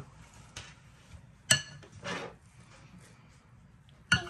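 Metal spoon clinking against a glass bowl as silkworm food is scooped: a light tap, then one sharp clink with a brief ring about a second and a half in.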